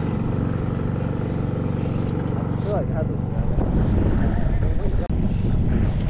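A steady low engine drone with an even stack of tones runs throughout. Rougher low rumble and knocking join it in the second half.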